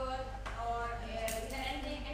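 A woman speaking, presenting to a room, over a steady low hum.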